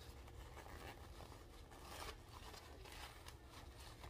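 Faint unzipping of the zipper that joins a hairpiece to a cap, with fabric rustling.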